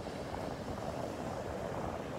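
Small one-to-two-foot surf breaking and washing up a sandy beach: a steady low rush.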